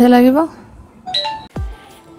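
A woman's voice trailing off on a word, then about a second in a short bright electronic chime, a doorbell-like ding of two notes, followed by a soft thump.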